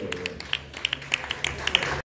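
Sparse, scattered handclaps from a small audience, about ten irregular claps in two seconds, with the last sung note fading out in the first half second over a low steady amplifier hum.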